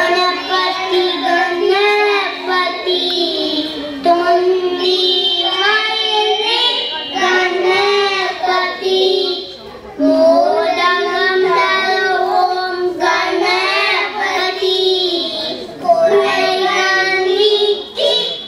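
Young children singing a prayer song into microphones, in long sung phrases with brief pauses between them.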